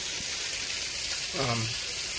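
Bacon sizzling in a frying pan, a steady hiss.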